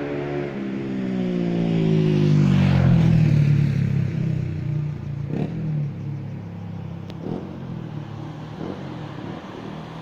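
A motor vehicle drives past close by. Its engine note slides down in pitch as it goes by, loudest about three seconds in and then fading. A few sharp knocks come after it.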